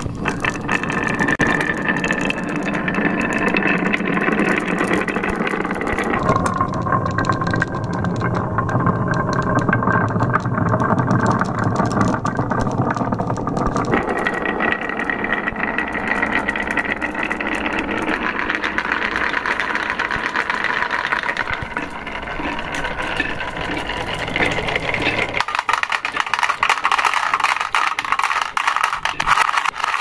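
Many marbles rolling and clattering down the zigzag groove of a wooden slope, a dense continuous rattle of countless small clicks against the wood and each other. The sound changes character abruptly about six seconds in, again near the middle, and again near the end.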